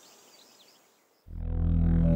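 Background music fading out to near silence, then a new electronic music cue with sustained low synthesizer tones coming in about a second and a quarter in and swelling.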